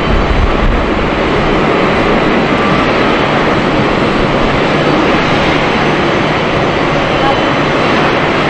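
Boeing 777-300ER's GE90 jet engines running as the airliner taxis, a loud, steady noise with no breaks.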